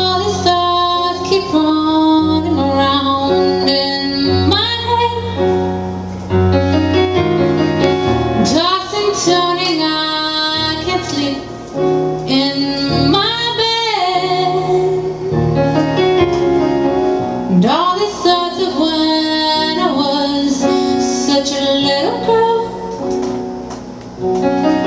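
A woman singing live to her own accompaniment on an electronic keyboard with a piano sound, playing sustained chords. Her phrases swoop up into long held notes.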